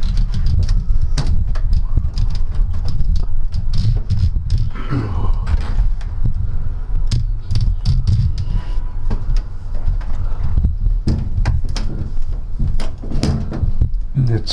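A glass-fronted display cabinet being opened and rummaged: scattered short clicks and knocks as items inside are shifted and a medal case is lifted out, over a steady low rumble.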